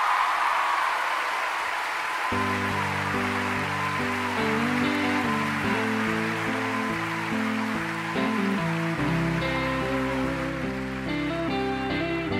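Concert audience applauding and cheering, and about two seconds in a keyboard starts playing slow sustained chords as the intro of a ballad, with a deep bass note joining near the three-quarter mark.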